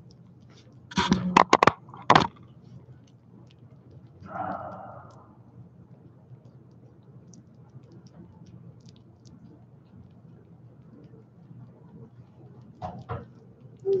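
A quick run of sharp clicks and cracks about a second in. A short rustle follows a few seconds later, and then there are faint scattered ticks, with two more clicks near the end.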